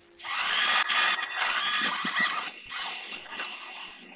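Enabot EBO SE robot's drive motors whirring as it rolls across the floor, heard through the robot's own microphone. The noise starts just after the beginning and rises and falls as it moves.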